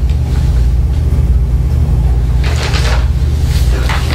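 Steady low rumble of room background noise, with a short rustle about two and a half seconds in and a couple of fainter ones near the end.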